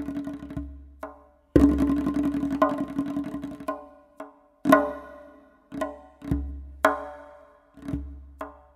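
Tonbak (Persian goblet drum) played solo: a fast roll fades out, a second dense roll of about two seconds follows, then single sharp strokes about half a second to a second apart, each ringing briefly with a pitched tone.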